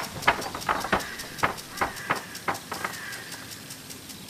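Running footsteps on a hard path, about three quick steps a second. A bird chirps faintly in the background.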